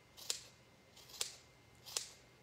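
Spring-loaded scissors snipping through four layers of flannel seam allowance: three short snips about a second apart.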